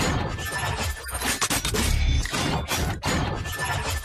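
Sound-design effects over electronic music: a quick run of whooshing sweeps and glassy, shattering hits on top of a deep bass.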